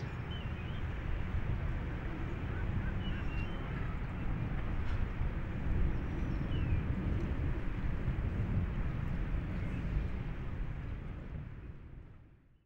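Outdoor ambience: a steady low rumble with a few faint, short high chirps, fading out near the end.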